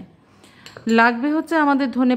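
Light clinks of white ceramic bowls being moved on the table. A woman's voice speaks over them from about a second in.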